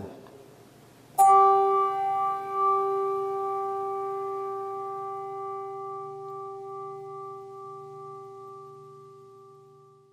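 A bell struck once about a second in, ringing with a clear pitched tone that slowly dies away over the next nine seconds: a memorial toll for one departed church member.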